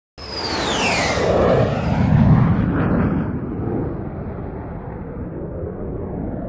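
A high whistling tone glides downward over about a second as a loud rumbling noise starts suddenly. The rumble swells for about two seconds, then settles into a steadier, lower rumble.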